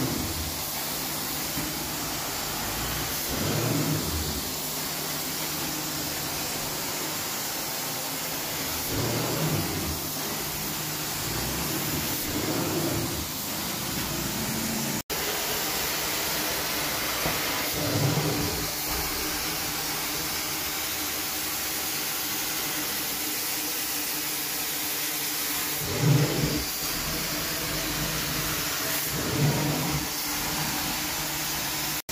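Carpet extraction wand running: a steady rushing of vacuum suction and spray as it is worked across the carpet, with short louder surges every few seconds. The sound cuts out for an instant about halfway.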